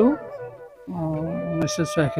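A man's voice speaking over background music with a held flute melody. The voice breaks off briefly just after the start and resumes about a second in.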